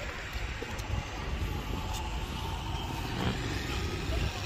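Steady outdoor motor-vehicle noise with a low rumble and no single event standing out.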